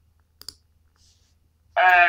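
Two quick, faint clicks about half a second in, then a person begins speaking loudly near the end.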